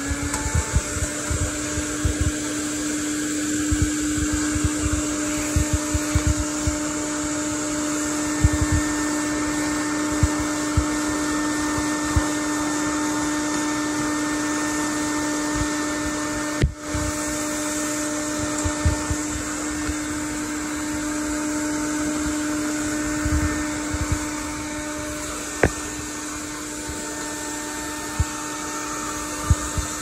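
Quantum X vacuum cleaner running at full suction through its hose attachment: a steady motor whine over rushing air, with frequent low bumps and one brief dip in loudness about halfway through.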